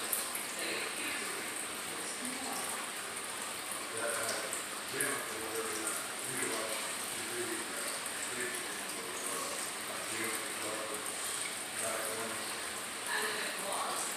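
Indistinct voices talking at a distance, over a steady high-pitched hiss.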